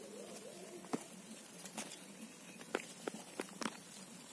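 Handling noise from a hand working rice leaves close to the microphone: several sharp clicks and taps over a steady hiss, with a faint warbling call in the first second.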